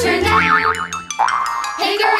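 Cartoon 'boing' spring sound effects for trampoline bounces over upbeat children's music: a wobbling twang in the first second, then rising sweeps near the end.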